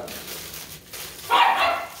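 A small dog barks once, a single short bark about a second and a half in.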